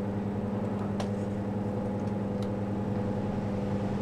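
Steady low electrical hum from running valve amplifier test gear on the bench, with a single click about a second in.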